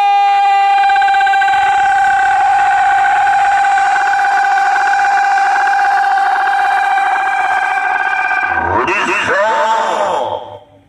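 A long, steady, held tone blares from a publicity vehicle's roof-mounted horn loudspeakers for about eight and a half seconds. Near the end it gives way to an echoing announcer's voice over the same speakers.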